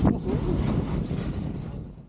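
Wind buffeting an action camera's microphone, mixed with the low rumble and hiss of a snowboard sliding over snow. The noise gradually fades away near the end.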